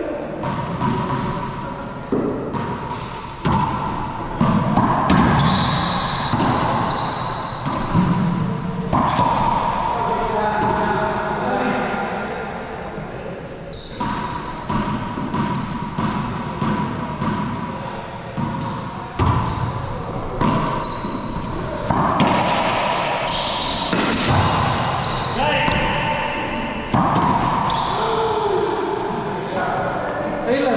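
Racquetball smacking off racquets, walls and floor during a doubles rally, each hit sharp and echoing in the enclosed court. Brief high sneaker squeaks on the hardwood floor come in between the hits.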